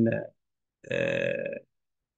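Speech only: a man's voice finishing a phrase, then after a short silence a long, steady, drawn-out "uh" of hesitation.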